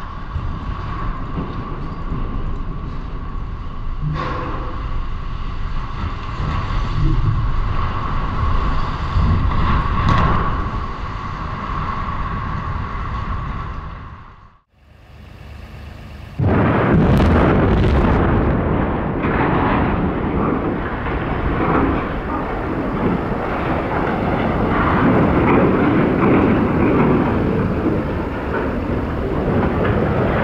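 Explosive felling of tall concrete chimneys. A continuous low rumble of a toppling chimney dies away. After a break, a loud sudden blast comes with a few sharp cracks from the demolition charges, then a long rumble as the stacks come down.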